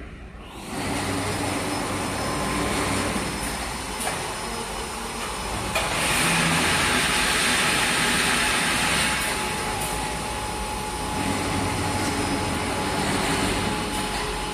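Wire mesh panel welding machine running: steady mechanical factory noise, louder and hissier for about three seconds in the middle, with a few sharp clicks.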